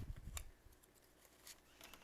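Paper banknotes being handled and fanned, faint and dry, with one sharp crisp snap of a bill about half a second in and a few lighter paper ticks later. A low dull rumble of hands and bills against the table fades out early.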